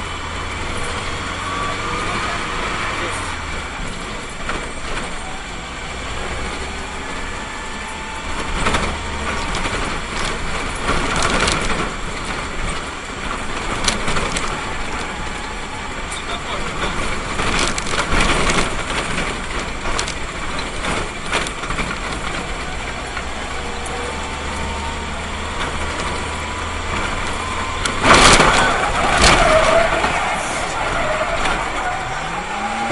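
Engine and road noise inside a moving minibus cabin as it drives through city traffic, with indistinct voices and occasional knocks; a louder burst comes near the end.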